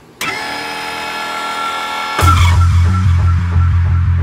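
Title intro music. A held, swelling chord runs for about two seconds, then a loud hit drops into a heavy, pulsing bass beat.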